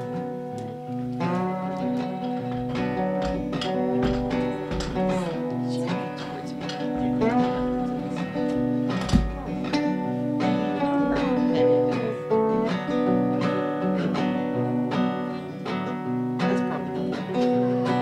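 Two acoustic guitars playing the instrumental introduction to a slow country ballad. There is a single low thump about halfway through.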